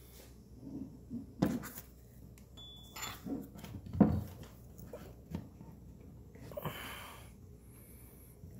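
Handling noises from a tomahawk and its stiff nylon sheath on a wooden table: a few scattered knocks, the sharpest about four seconds in, and a short rasping rub near the end as the tight sheath is forced onto the hawk head. The sheath is a tight fit that has to be forced on and can't be fitted one-handed.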